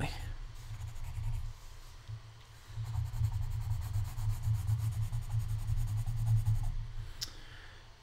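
Colored pencil rubbing on sketchbook paper as an area of the drawing is shaded in, the scratching swelling and easing with the strokes. A single short click comes near the end.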